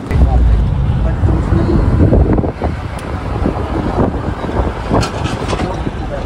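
Low rumble of a car moving, heard from inside the cabin, with road and engine noise.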